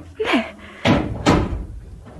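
A door shutting with two heavy thuds about half a second apart, the second dying away slowly. Just before them there is a brief vocal sound.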